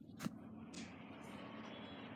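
A single click about a quarter second in, then a faint, steady whir as a laptop powers up.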